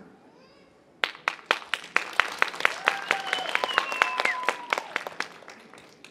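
Audience applause: separate hand claps start about a second in, run on steadily and fade out near the end. A high voice calls out briefly over the clapping in the middle.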